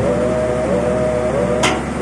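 Background music: a held melody line that glides gently in pitch over a steady low layer, with one short click about one and a half seconds in.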